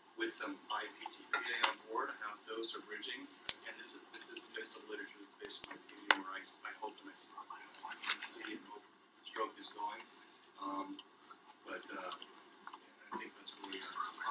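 Indistinct talk in a room, broken by scattered sharp clinks and knocks like cutlery and dishes.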